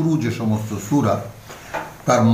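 Only speech: a man talking in Bengali, with a quieter stretch in the second half.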